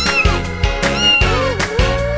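A cat meowing several times, in arching then rising drawn-out calls, over upbeat children's music with a steady beat.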